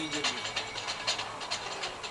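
Men's voices talking, with a faint steady low hum underneath.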